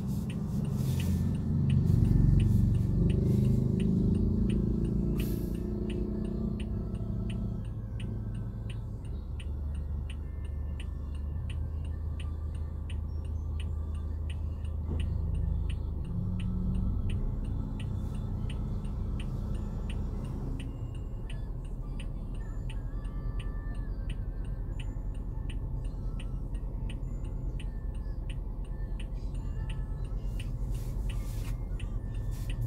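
Car engine idling, heard from inside the cabin as a steady low hum, louder for the first few seconds. Over it the indicator relay ticks regularly, about two ticks a second.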